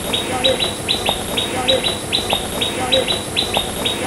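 Small birds chirping without a break: quick, short chirps that fall in pitch, several a second.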